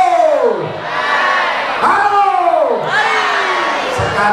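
A man's voice through a handheld microphone giving two long drawn-out calls, each sliding steeply down in pitch over about a second, with crowd noise underneath.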